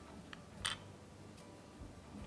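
A wooden-handled paintbrush laid down on the tabletop: a couple of light clicks, the sharpest about two-thirds of a second in.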